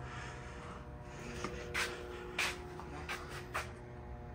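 A few short scuffing sounds, four of them in the second half, over a steady faint hum in a small room.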